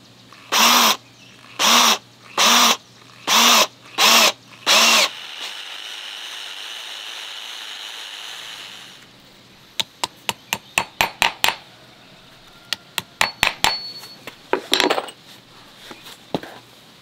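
Cordless drill driving a long screw into a wooden post base in six short trigger bursts, the motor spinning up and down each time. A quieter steady whir follows for about four seconds, then a run of sharp taps and knocks.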